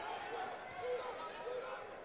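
Court sound from a college basketball game in an arena: a basketball being dribbled, with players' faint calls over the murmur of the hall.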